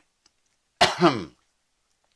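A man clearing his throat once, about a second in, in two quick pushes.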